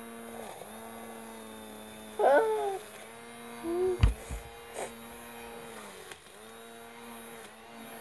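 Small battery-powered fan of a toy bubble gun running with a steady electric hum, dipping briefly a few times as it is held against a child's hair. A short child's vocal sound comes about two seconds in, and a sharp knock about four seconds in.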